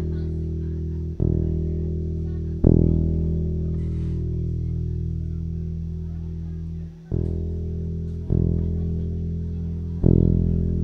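Electric bass guitar being tuned up through the amp: single low notes are plucked and left to ring, re-struck four times at uneven gaps of one to four seconds.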